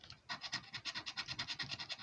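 A blue plastic scratcher scraping the coating off a paper lottery scratchcard, in quick repeated strokes that uncover the next number box.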